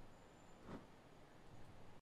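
Near silence: faint room hiss, with one faint brief sound a little under a second in.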